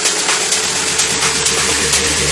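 Tech house DJ mix in a breakdown with no kick drum: a loud hiss-like noise wash over a held tone, with the bass swelling through the second half.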